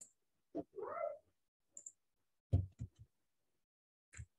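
A domestic cat meows once, briefly, about a second in, heard faintly over the call's audio. A few soft bumps follow about halfway through.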